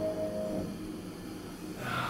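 Yamaha UX upright piano's last chord ringing out and fading away within about the first half second, leaving only a faint decay.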